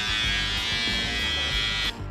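Cordless electric hair clipper buzzing steadily as it is run over a man's cheek and jaw, then cutting off suddenly near the end. Background music plays underneath.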